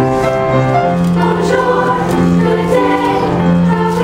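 A combined middle school choir singing part of a Disney song medley in long, held notes.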